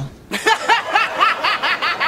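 A person laughing in a quick, high-pitched run of short ha-ha-ha pulses, about six or seven a second, starting a moment after a brief pause.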